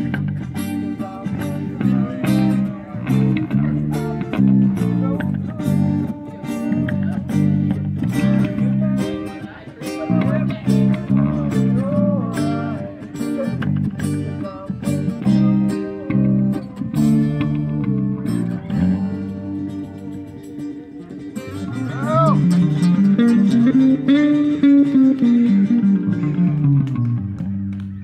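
Acoustic guitars and an electric bass guitar playing together in a live jam. The low end is strong and busy, and near the end a low note slides up and back down.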